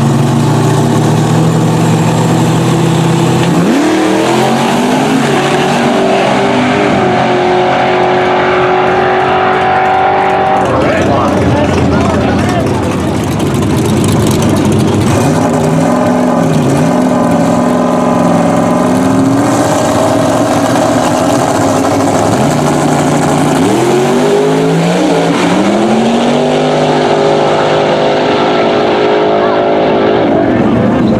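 Drag-racing street car engines: loud steady revs on the starting line, then a launch about three and a half seconds in with the engine note climbing steeply as the car pulls down the track. A second launch with revs climbing the same way follows about twenty-four seconds in.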